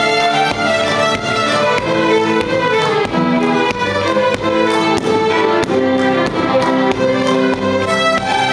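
Ensemble of many fiddles with cellos playing a tune together, the bowed notes changing several times a second without a break.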